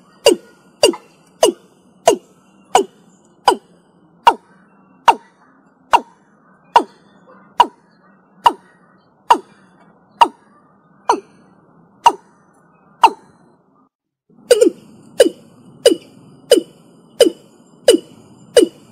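Watercock (Gallicrex cinerea) calling: a long series of short, repeated notes, each sliding down in pitch, slowing from about two notes a second to about one. After a pause of about a second and a half, a new, faster series begins.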